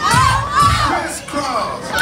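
A group of young teenagers shouting and singing along together in many overlapping voices, over dance music with a low bass beat.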